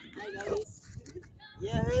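Quiet voices talking in a brief lull between louder speech, with a voice starting up again near the end.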